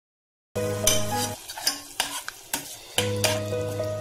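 A spoon stirring onion-garlic-ginger masala as it sizzles in oil in a steel pot, with sharp clicks of the spoon against the pot. The sound starts suddenly about half a second in, with a steady hum under it that drops out for a moment in the middle.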